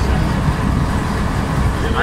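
A boat's engine running steadily while the boat is underway: a loud, constant low drone under an even hiss.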